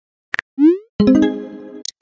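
Chat-app message sound effect as a text bubble pops up: a quick double tap, then a short rising pop and a bright chime that rings and fades over about a second.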